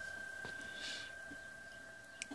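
Faint hiss from a ham-radio HF receiver tuned to the 20-metre PSK31 frequencies, with a thin, steady high-pitched tone running through it and a small click about half a second in.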